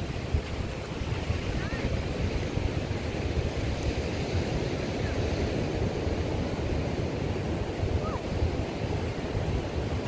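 Wind buffeting the microphone over the steady wash of ocean surf.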